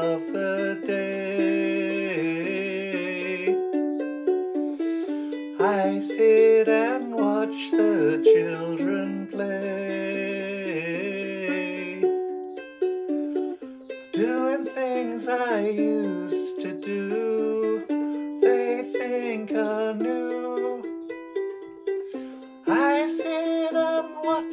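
Ukulele fingerpicked through a slow chord progression, one note after another, while a man sings the melody over it in phrases.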